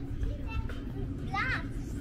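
Outdoor street ambience under a steady low rumble, with faint voices and one short, high-pitched child's call that rises and falls about one and a half seconds in.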